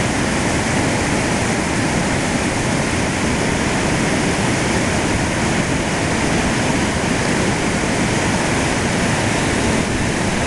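Water pouring over a weir and churning below it: a loud, steady rush of white water.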